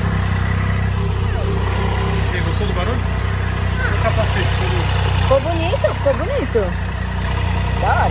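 Triumph Tiger three-cylinder motorcycle engine idling steadily, a low even hum.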